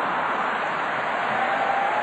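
A large audience reacting to a joke, a steady wash of many people laughing and clapping together.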